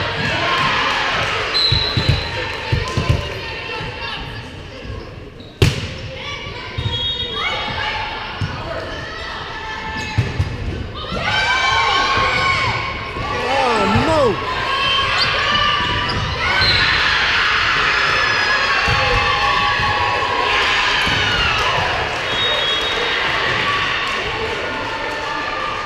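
Volleyball rally on a gym's wooden floor: the ball is struck with sharp smacks, the loudest about five and a half seconds in, and shoes squeak on the floor. Players and spectators call out and shout, louder through the second half, echoing in the hall.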